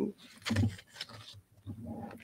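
A woman's low, murmured hesitation sounds and breaths close to a podium microphone: four short sounds about half a second apart.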